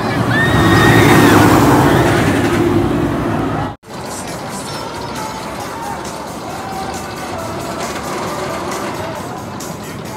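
A roller coaster train passing close by: a loud rushing rumble that swells over the first second and fades, with a rider's high scream on top. An abrupt cut a little under four seconds in leaves steady, quieter amusement-park background noise.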